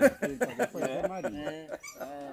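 People's voices talking, the words not made out.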